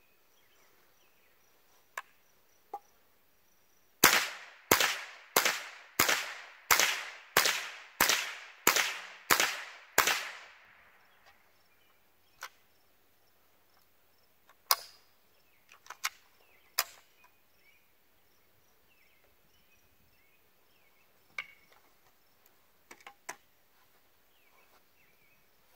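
.22 rifle fired ten times in quick, even succession, about a shot every two-thirds of a second, emptying a ten-round magazine. Some fainter sharp clicks follow later.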